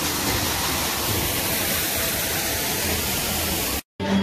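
Water rushing steadily down an artificial rock waterfall and splashing into a pool below, cutting off suddenly just before the end.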